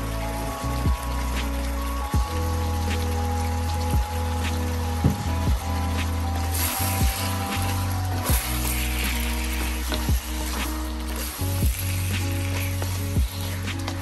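Pieces of roast duck in soy sauce and oyster sauce sizzling in a pan while a wooden spoon stirs them, with scattered clicks of the spoon. The sizzle grows louder through the middle of the stretch. Background music with a steady bass line plays throughout.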